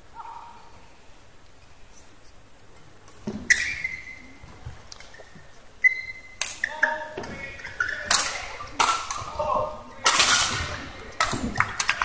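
Badminton match sounds in an indoor arena: fairly quiet at first, then sharp squeaks and hits on the court from about three seconds in, followed by shouting and cheering that grows louder toward the end.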